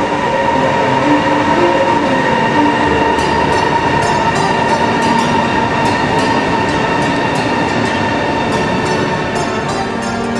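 High-speed electric train running, with a steady high whine over a constant rush of noise. Light clicking comes in from about three seconds in.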